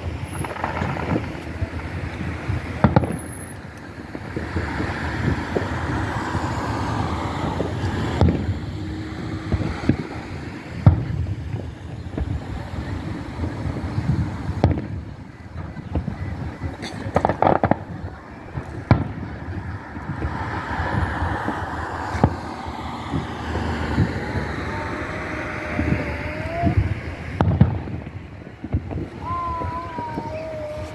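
Fireworks display: aerial shells bursting in a long, irregular series of booms, sometimes several within a second.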